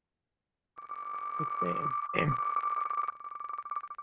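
Spinning-wheel name picker's sound effect on the Wheel of Names website, heard through a video call: a fast run of ticks as the wheel spins, blurring into a steady ringing tone. It starts about a second in and thins out near the end.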